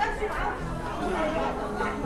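Shoppers chattering and talking in a busy indoor market hall.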